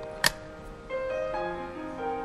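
Slow, soft keyboard music with held piano-like notes moving in steps: the instrumental introduction to a ballad. A single sharp click cuts through about a quarter second in.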